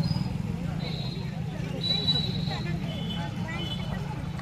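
A vehicle engine idling with a steady low rumble, under scattered background voices.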